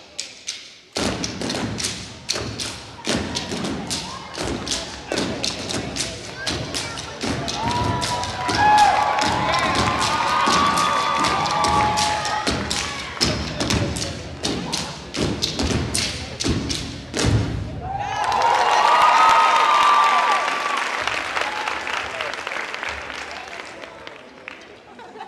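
Rapid rhythmic clacks and thuds of wooden sticks being struck together in a drill routine, starting about a second in and stopping abruptly about three quarters of the way through. The crowd whoops partway through, then cheers and applauds after the strikes end.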